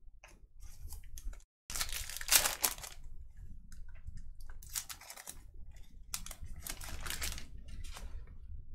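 A foil trading-card pack wrapper torn open and crinkled by hand, in three bursts of crinkling: about two seconds in, around five seconds, and from six to seven and a half seconds.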